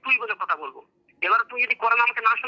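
Speech heard over a phone call, with a brief pause about a second in.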